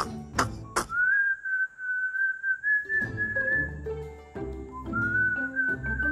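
A man's laugh trails off in the first second. Then a whistled tune begins, a single wavering note line held for a few seconds, broken off and taken up again near the end. Light background music with a bass line comes in beneath it about three seconds in.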